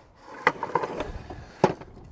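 Pole-mounted bird feeder being lowered down its post after its locking pin is pulled: a click, a short rattling clatter as it slides, then a sharper click about a second later.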